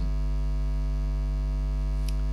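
Steady electrical mains hum, even and unchanging, carried through the sound system's audio between the spoken parts.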